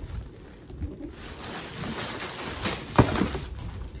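Plastic mailer bags rustling and sliding out of a cardboard box as it is tipped over and emptied, with one sharp thump about three seconds in.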